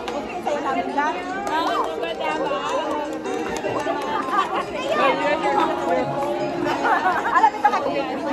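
Many people chattering at once over music playing in a large hall.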